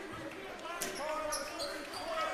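A basketball being dribbled on a hardwood gym floor.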